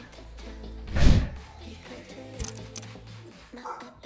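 Background music, with one loud thud about a second in from a plate-loaded hip thrust machine as its load is being changed.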